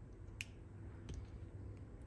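Quiet room tone with one light, sharp click about half a second in and a fainter one near the middle, as small card-stock wheel pieces are set and pressed onto a card with a pointed pick tool.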